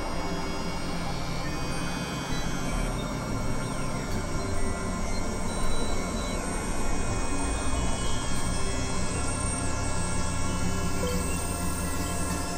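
Dark experimental synthesizer drone music: many sustained tones layered at once, with thin high tones sweeping downward in pitch. A deep low drone swells up about four seconds in and stays.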